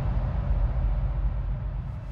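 Steady low rumble with a hiss over it, the noise intro of an electronic song, which started abruptly just before.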